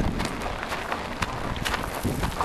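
Quarter horse walking on a dry dirt trail: irregular soft hoof falls over a steady low rumble.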